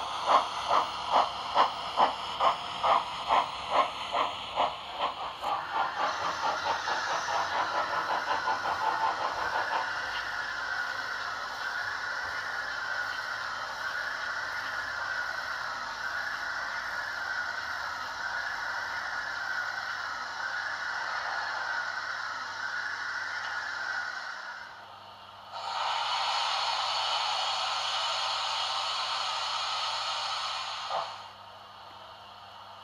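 Digital sound decoder (Henning sound) in a Roco model of steam locomotive 18 201, playing steam exhaust chuffs that quicken and run together over the first several seconds, then a steady steam hiss with a soft pulse about once a second. The hiss drops out briefly near the end and comes back.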